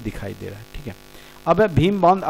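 A man's lecturing voice in Hindi trails off, pauses briefly, and resumes loudly about one and a half seconds in, over a steady electrical mains hum that shows through in the pause.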